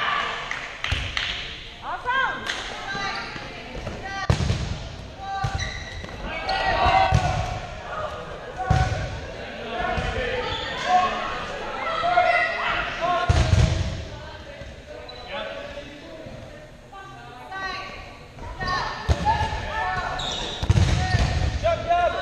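Dodgeballs thudding and bouncing on a hardwood gym floor again and again, among players' shouts and talk.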